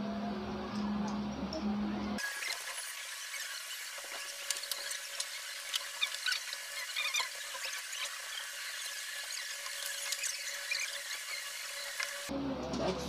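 Small clicks and rattles of metal microphone-stand tubes and boom-arm parts being handled and fitted together, with a thin, high squealing tone underneath. It starts abruptly about two seconds in, and the sound is thin and tinny, with no low end.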